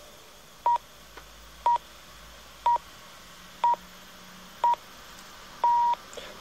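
Radio time signal: five short, high, steady beeps exactly a second apart, then a longer sixth beep, marking the full hour before a news bulletin.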